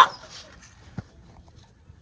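A man's loud wailing cry cuts off right at the start, followed by quiet background with a single faint tick about a second in.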